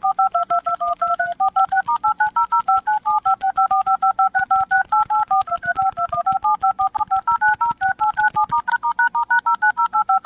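BlackBerry phone keypad pressed in a rapid, unbroken stream, each key sounding a short two-note touch-tone (DTMF) beep, about seven a second with the note pair changing from key to key. It is a barrage of keypad tones used to 'dial-bomb' a scam caller.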